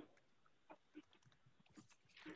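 Near silence: room tone, with a few faint short sounds.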